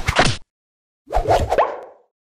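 Two short cartoon-style pop sound effects with sliding pitch, about a second apart, accompanying an animated title transition.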